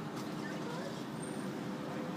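Steady outdoor traffic and vehicle hum with a faint low engine drone, and faint far-off voices.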